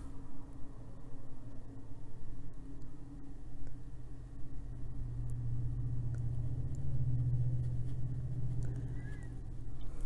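A low rumble that swells about five seconds in and eases off near the end, with a few faint ticks.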